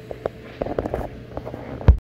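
Camera handling noise: a scatter of light clicks and knocks over a faint steady hum, ending in a louder thump just before the sound cuts off.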